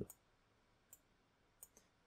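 Two faint computer mouse clicks, one about a second in and one near the end, over near silence.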